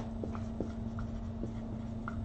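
Marker pen writing words in large letters: a string of short, faint squeaks and taps from the pen strokes, over a steady low hum.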